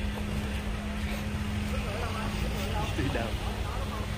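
A steady low mechanical rumble with a constant hum, under faint voices talking.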